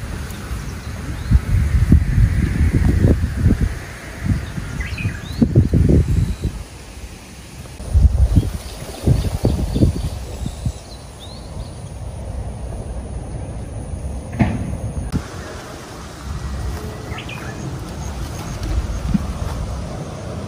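Irregular low rumbling gusts of wind on the microphone, strongest in the first half, with a few short bird chirps scattered through.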